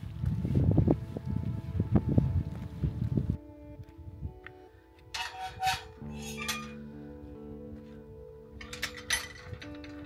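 Footsteps on a gravel path with a low rumble. About three seconds in they cut off and background music takes over, with held notes and a few bright chiming strikes.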